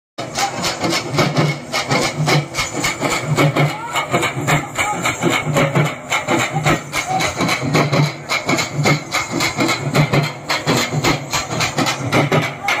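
A troupe of folk drummers playing large double-headed drums together in a fast, dense rhythm, with deep beats falling about twice a second under rapid strokes.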